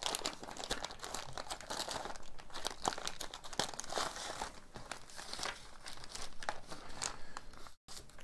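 Clear plastic zip-lock bags crinkling and rustling as they are handled, opened and emptied, with scattered light clicks throughout.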